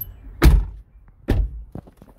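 Two car doors of a Hyundai shut one after the other, two heavy thuds about a second apart, the first the louder.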